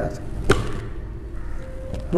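A single sharp tap about half a second in, a hand coming down on the wooden harmonium, in a pause between the chanted phrases.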